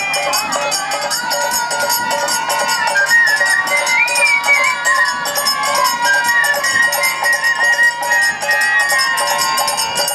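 Bengali Hari-naam kirtan music: khol drums and small hand cymbals keep a steady beat under a harmonium drone, while a bamboo flute plays the melody, rising briefly about four seconds in, with women singing the chant.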